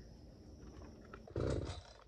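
Gas chainsaw being pull-started: quiet, then about a second and a half in a brief half-second sputter as the engine fires on a pull without catching.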